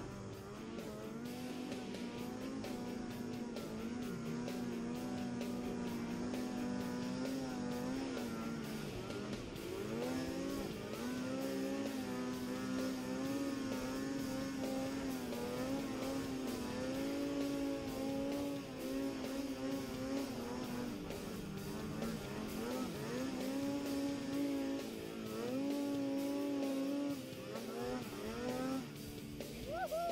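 Snowmobile engine running hard under throttle through deep snow, its pitch holding steady for stretches of several seconds, with several dips and quick rises as the revs drop and come back up.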